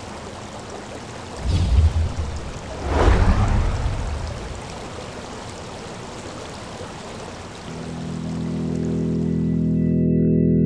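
Rushing, stream-like water sound with two louder surges in the first few seconds, then a sustained organ-like music chord swelling in from about eight seconds.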